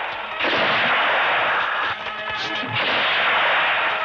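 Gunfire and blast sound effects mixed over a background music score, with two long dense stretches of noise and the music coming through on its own briefly in the middle.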